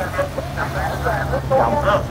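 Police escort motorcycles passing at low speed, their engines a steady low hum, under the voices of spectators close by.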